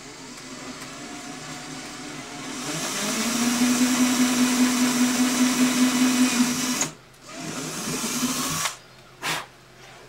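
Cordless drill with an 11/64-inch bit boring a bridge pin hole through an acoustic guitar's top under light pressure. The motor starts low, speeds up about two and a half seconds in, runs at a steady pitch, and cuts off about seven seconds in, followed by a short quieter stretch of noise and a couple of clicks.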